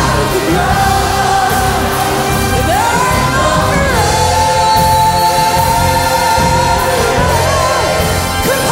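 Praise team of several voices singing into microphones over a live gospel band, with no clear words. About three seconds in, the voices slide up into a long held note that lasts around three seconds before the line moves on.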